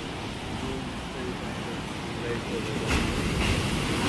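Steady rush of wind and surf on a rough-sea day, growing a little louder near the end, with faint voices in the background.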